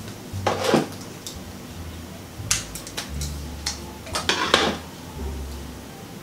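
Scissors snipping a tag off a wig: a few short, sharp metallic clicks of the blades, with brief rustles of handling around them.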